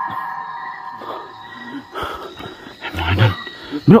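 Steady high chirring of night insects, with scattered short knocks and a louder low thump about three seconds in.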